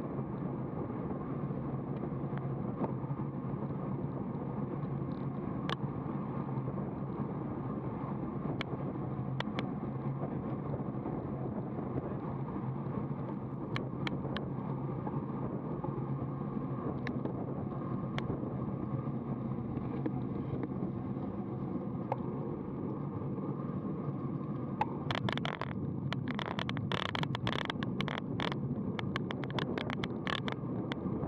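Steady rush of wind and tyre rumble picked up by a bicycle-mounted camera on a road bike riding at about 35 km/h, with scattered sharp clicks. Near the end a spell of rapid rattling clicks sets in as the ride moves onto a rougher path.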